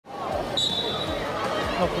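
Referee's whistle blown once, a single high steady blast starting about half a second in and fading over the next second, signalling the start of a field hockey shoot-out. Crowd noise with low repeated thumps runs underneath.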